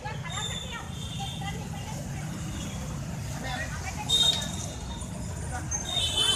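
Motorcycles and scooters running slowly in a street rally, a steady low engine rumble with voices calling out over it. A brief loud high-pitched sound about four seconds in.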